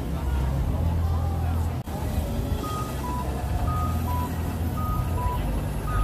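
Busy street ambience: a crowd's voices over a steady low rumble. In the second half a repeating high-low electronic two-tone beep sounds about three times.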